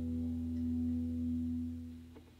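A low sustained chord from a live band, with the electric bass note underneath, ringing steadily and then fading away near the end.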